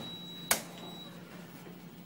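A single sharp knock about half a second in, over a steady low hum.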